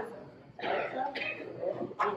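A man coughing and clearing his throat into his hand, starting about half a second in, soft and short.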